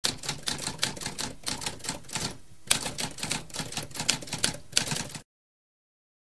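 Typewriter keys clacking in quick, irregular strokes, with a short pause about halfway through, stopping abruptly a little after five seconds.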